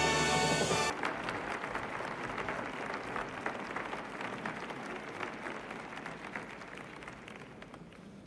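Orchestral theme music with sustained brass-like chords stops abruptly about a second in, giving way to audience applause that slowly dies away.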